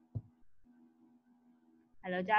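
Faint steady electronic hum made of several even tones, cutting out briefly about half a second in, with one short low thump near the start.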